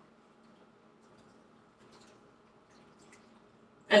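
Faint sounds of soup being stirred in a pot on the stove: a few soft ticks and liquid sounds over a low, steady hum. A voice starts right at the end.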